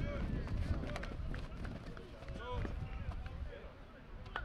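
Players and coaches shouting and calling out, with indistinct words, during an offensive-line versus defensive-line one-on-one football rep. A few short sharp clicks are scattered through, over a steady low rumble.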